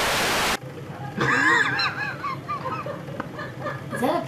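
A brief burst of TV static hiss, cutting off about half a second in, followed by a series of short honking calls, each rising and falling in pitch.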